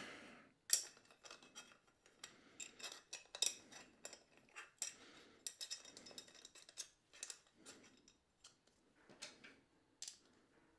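Faint metal clicks, taps and scrapes of a camera cage and mounting plate being handled and fitted on a camera with a telephoto lens, scattered irregularly, the sharpest about a second in and again a few seconds in.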